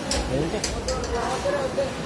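Background chatter of several people's voices, with a few short clicks about half a second to a second in and a low rumble underneath.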